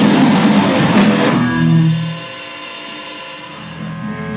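Rock band playing electric guitar and drum kit together. About two seconds in the playing stops and a held chord rings on more quietly, fading away.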